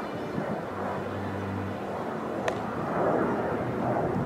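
A baseball smacking once into a leather glove, a sharp snap about two and a half seconds in. It sits over a steady outdoor background hum with a few low held tones.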